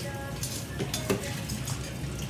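Yellowtail head sizzling as it grills over charcoal on a wire grill, a steady crackling hiss with a few sharp clicks, the loudest just after a second in.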